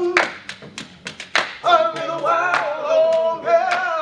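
A group of men singing a cappella with hand claps keeping the beat. The singing stops for about a second early on while the claps carry on, then comes back in.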